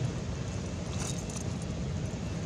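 A macaque biting and scraping at a young coconut's husk, giving a short cluster of crisp clicks about a second in, over a steady low wind rumble on the microphone.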